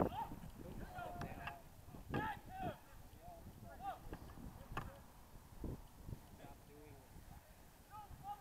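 Faint, distant shouts and calls of rugby players across the pitch during open play, coming in short scattered bursts, with a few sharp knocks among them.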